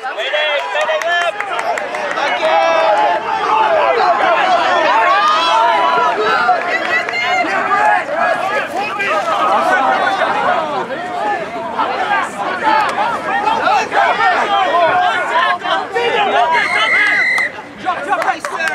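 Sideline spectators shouting and cheering over one another through the play. Near the end comes one short, steady referee's whistle blast.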